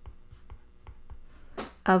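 Stylus writing on a tablet's glass screen: a string of faint, small taps and clicks as letters are handwritten.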